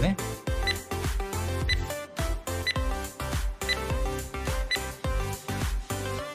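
Background music with a steady, quick beat and short high clicks about once a second, like a countdown tick.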